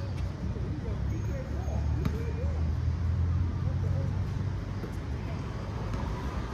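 Outdoor background at a basketball court: a steady low rumble, faint distant voices of the players, and a single sharp knock about two seconds in.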